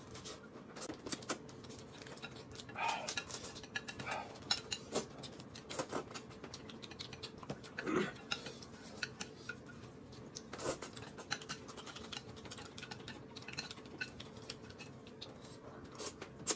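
Faint table-eating sounds: chopsticks clicking against plates and bowls in scattered taps, with short bursts of chewing and eating noises.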